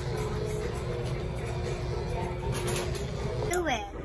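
Electric hair clippers buzzing steadily at a boy's head during a haircut, stopping shortly before the end, with voices in the background.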